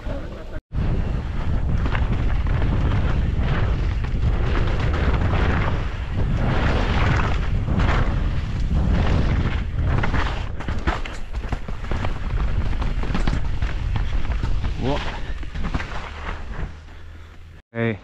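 Helmet-mounted camera riding a downhill mountain bike down a dirt trail: heavy wind buffeting on the microphone, with tyres running over dirt and roots and the bike rattling over bumps as frequent clicks and knocks. The sound cuts out briefly just under a second in.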